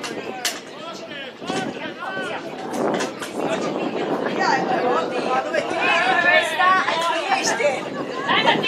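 Several voices chattering and calling out over one another, no single speaker clear, growing louder toward the end, with one sharp knock about half a second in.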